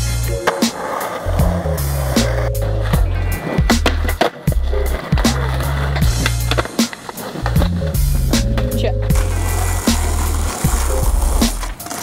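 Skateboard sounds, boards clacking and wheels rolling on pavement, mixed with loud music with a deep bass line that steps from note to note.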